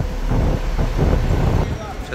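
Low rumble of bus and traffic engines on a busy street, with indistinct voices of people walking by.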